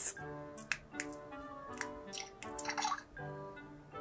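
Animal Crossing sound drop keychain playing its short electronic sound effect: several brief blips, which she takes for the game's fishing noise, over soft background music.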